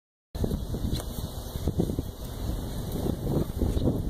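Wind buffeting a phone's microphone: an uneven, gusty low rumble that starts abruptly just after the audio begins.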